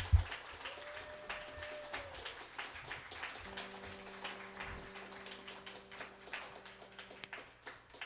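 Small audience clapping at the end of a band's set, the individual claps thinning and fading out toward the end. A steady low tone is held for a few seconds in the middle, with a couple of low thumps.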